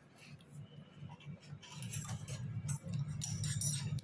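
Faint light clicks and handling of door hardware as the door is opened and the man moves to its outer side, under a low murmur that grows louder toward the end.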